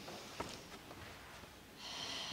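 A pause in a woman's talk into a handheld microphone: faint room tone with a small click, then a breath drawn in near the end.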